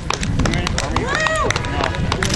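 Running footsteps on pavement as a runner passes close by, a rapid series of sharp slaps. A voice calls out once, rising and falling, about a second in.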